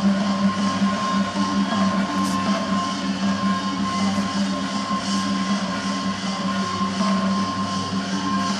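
Traditional ringside music for a Lethwei bout: a steady held note over a regular beat, mixed with arena crowd noise.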